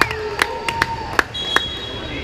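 Volleyball rally on a gym's hardwood floor: several sharp knocks of the ball being hit and bouncing and of players' feet in the first second or so, then a referee's whistle blown as one steady high tone, ending the rally.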